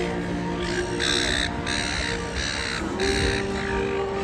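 Background music playing, with a bird giving four loud cawing calls in quick succession from about a second in.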